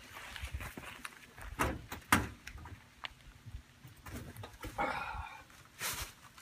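Scattered clicks and knocks as the sheet-metal panel of an outdoor AC condenser unit is worked open by hand, the sharpest knock about two seconds in. A brief higher-pitched sound follows around five seconds in.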